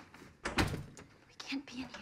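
A door opening with a thud about half a second in, followed by soft whispered voices.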